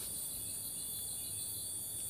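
Insects chirring steadily in a high, pulsing drone.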